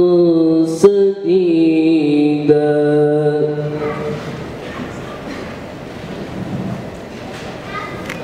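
A man's amplified voice chanting a long, wavering held phrase, which ends about four seconds in; after that only the softer hubbub of the hall. A sharp click sounds near the start.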